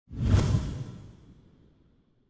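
A title-card whoosh sound effect: a sudden swell just after the start with a deep rumble underneath, fading away over about a second and a half.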